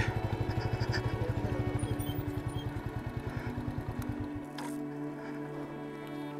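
Single-cylinder engine of a Bajaj Avenger 220 motorcycle running at low revs, an even rapid pulsing that fades away about four seconds in. Background music with long held notes plays over it and carries on alone.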